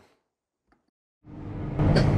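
Silence for about the first second. Then the six-cylinder diesel engine of a Deutz-Fahr 8280 TTV tractor fades in, running steadily with a low hum as heard inside the cab.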